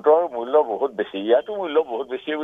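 A man speaking continuously over a telephone line, his voice thin and narrow-sounding.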